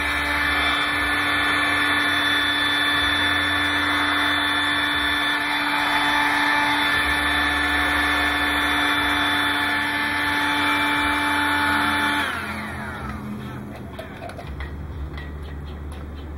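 Handheld hot air gun running steadily, its fan whirring with a steady whine, blowing hot air onto heat-shrink tubing. About twelve seconds in it is switched off and the fan winds down, its pitch falling, followed by a few faint clicks.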